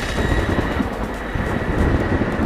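Dramatic trailer sound design: a dense low rumble with a thin, steady high-pitched tone held over it.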